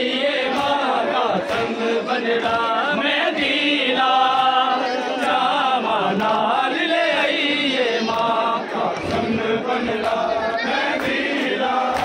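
Men chanting a noha in chorus, a mourning lament, with regular slaps of hands on bare chests keeping time, about once a second.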